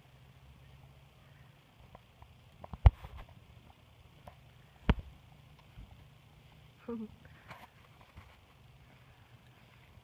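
A few sharp, isolated thumps over a quiet background, the loudest about three and five seconds in, and a short burst of voice near seven seconds.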